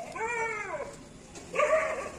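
An animal calling twice: a pitched cry that rises and falls lasting almost a second, then a shorter, louder one about a second and a half in.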